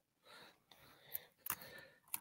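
A near-quiet pause between talk: faint breathy noise through a voice-call microphone, with a small click about a second in and another faint sound near the end.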